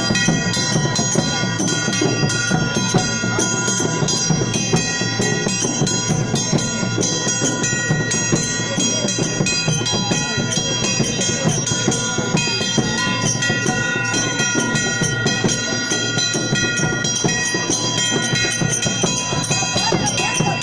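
Live procession music: drums beaten fast and steadily under a wind instrument holding long, steady notes.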